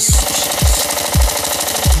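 Rapid automatic gunfire sound effect laid over a hip-hop beat: a fast, even rattle of shots, with deep bass hits falling about twice a second underneath.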